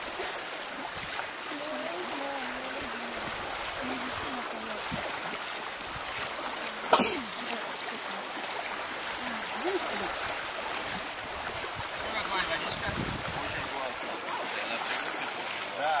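Shallow river water running steadily, with the splashing of legs wading through it. One sharp click stands out about seven seconds in.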